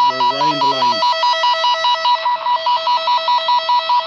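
VXSCAN F04 wire locator receiver beeping a fast, even two-tone warble, about five beeps a second, as its probe is held near the cable carrying the tone generator's signal. The loud, steady rate shows a strong pickup on the traced line.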